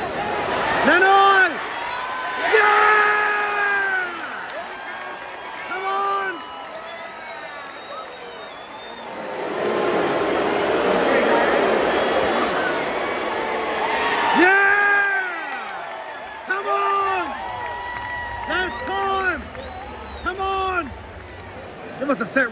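Stadium crowd of rugby league fans: several long shouted calls from fans close by, then the crowd's cheer swells up for a few seconds in the middle, followed by a run of shorter shouts near the end.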